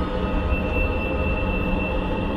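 A train passing nearby: a steady low rumble with no breaks.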